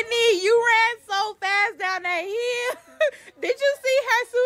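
A high-pitched voice making a run of wordless, drawn-out sounds. Several are held for about a second at a steady pitch, with short breaks between them.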